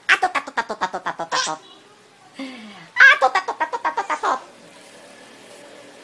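A four-month-old baby laughing in two bouts of quick, rhythmic pulses, about nine a second: one at the start and another about three seconds in.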